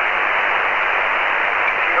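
Steady hiss of band noise from a Kenwood shortwave transceiver's speaker with no signal coming through, held below about 3 kHz by the receiver's filter.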